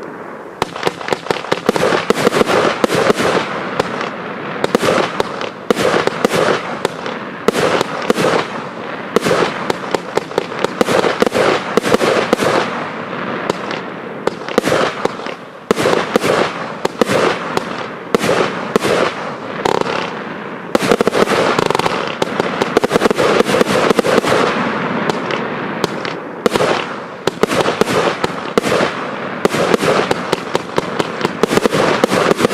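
Consumer fireworks firing a continuous barrage: a dense, rapid string of sharp bangs from launches and bursting shells, with a couple of short breaks partway through.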